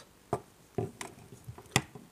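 Light plastic clicks and knocks as a Baofeng BF-888S handheld radio and its just-detached battery pack are handled and set down on a hard surface. The sharpest click comes near the end.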